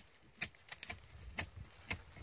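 Small metal fittings on a strap clicking and clinking as it is handled, a few sharp irregular clicks.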